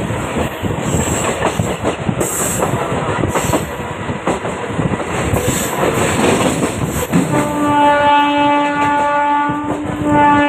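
Passenger train running, heard from an open carriage door: wheels rumbling and clicking over the rails. About seven seconds in, the locomotive horn sounds one steady blast of over two seconds.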